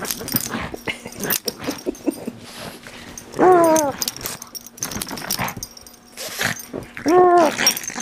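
A pug mauling a plush toy: rustling and scuffling of the toy against the couch, with two short pitched whine-growls from the dog, about halfway through and near the end. A person laughs briefly at the start.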